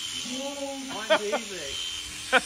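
Electric cattle clippers buzzing steadily, with a voice talking quietly over them.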